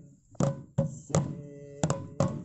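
Folk dance music led by a deep-toned drum: struck strokes in an uneven rhythm, each ringing briefly, with a quick double stroke near the end.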